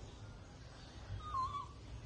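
Newborn monkey giving one short, high squeaky call with a wavering pitch, about a second and a half in, over a low rumble.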